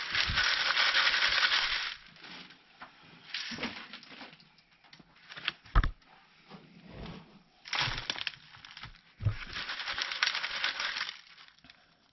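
Worm castings being shaken through the wire mesh screen of a plastic sifting pan: a gritty, rustling hiss for about two seconds, then again for about three seconds later on. In between, scattered knocks and scrapes as compost is handled, with one sharper knock about halfway through.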